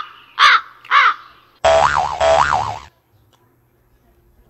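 Three loud crow caws about half a second apart, then a comic wobbling tone that swoops up and down twice for about a second and cuts off suddenly: cartoon sound effects edited in over the eating.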